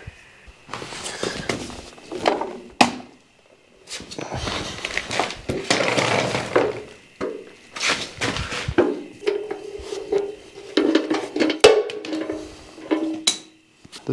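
A painted sheet-metal bulldozer fuel tank being handled and shifted on a rag-covered floor: irregular scraping and rubbing, with several sharp metal knocks and clinks.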